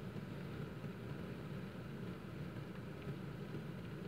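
Quiet, steady low hum and hiss with no distinct events: the background tone inside a car.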